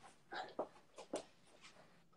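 A handful of short knocks and rustles, about five in a little over a second: a phone being set in place and footsteps on a hard floor.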